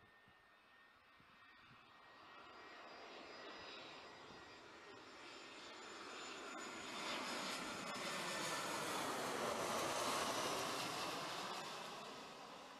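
Airbus A320-family airliner on landing approach with gear down, the engine noise growing steadily louder as it nears and passes overhead, loudest about ten seconds in, then easing slightly.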